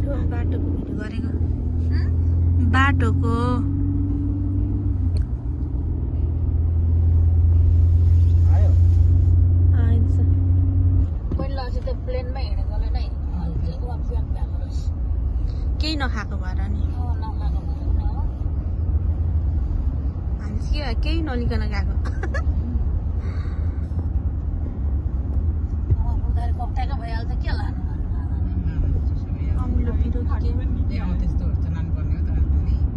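Car interior while driving: a steady low engine and road rumble fills the cabin. It holds an even hum for about the first ten seconds, then turns rougher.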